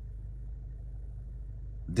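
Steady low hum of a car engine idling, heard from inside the cabin.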